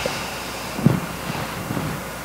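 A pause in a sermon: steady background hiss of the room picked up by the pulpit microphone, with one brief faint sound a little under a second in.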